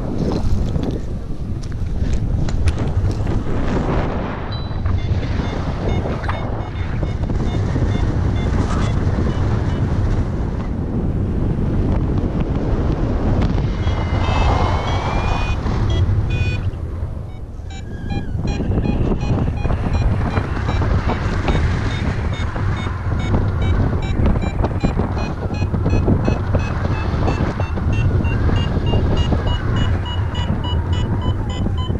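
Strong wind buffeting the microphone, first on the launch run and then in flight under a paraglider wing. From a little past halfway a variometer beeps in quick short pulses, its pitch slowly rising, the sign of the glider climbing in lift.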